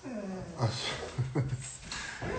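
A dog whining and yelping in several short pitched cries that mostly fall in pitch, in quick succession.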